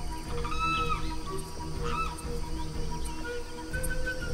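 Background music with jungle animal sound effects over it: a few short pitched calls that arch up and down, about half a second in and again about two seconds in, and a longer call near the end.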